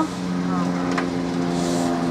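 Car engine running steadily, heard from inside the cabin as a constant hum, with a single short click about a second in.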